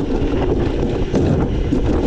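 A Wiegand summer bobsled sled running fast down its stainless-steel trough: a loud, steady rolling rumble from the wheels on the steel channel, with wind on the microphone.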